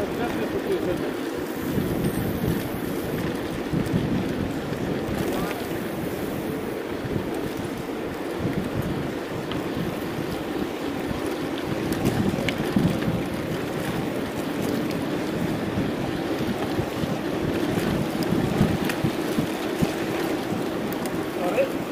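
Wind buffeting the microphone of a camera on a moving mountain bike, over a steady rumble of tyres rolling on the road, with faint scattered clicks.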